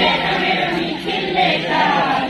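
A group of schoolgirls singing a Gondi-language song together, many voices in unison like a choir.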